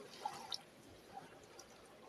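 Faint shallow seawater lapping at the shoreline, with two small splashes early on, about a quarter and a half second in.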